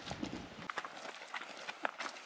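Faint footsteps on loose rocky scree and gravel, with stones crunching and clicking underfoot in an irregular patter.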